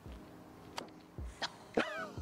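Sand wedge striking a golf ball on a short chip shot: one sharp click a little under a second in. A few faint knocks and a short falling tone follow near the end.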